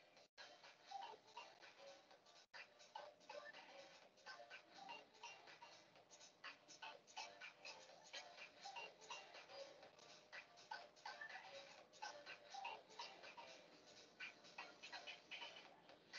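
Faint background music with a ticking beat, barely above silence.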